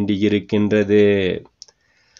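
A man's voice speaking in Tamil, stopping about one and a half seconds in, followed by a faint click and a short pause.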